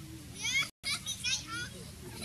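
High-pitched, wavering squeals of a young macaque, in two short bursts separated by a brief dead gap.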